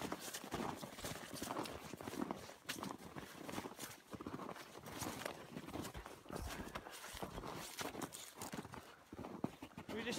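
Footsteps crunching through snow, a steady run of steps as a person walks through brush.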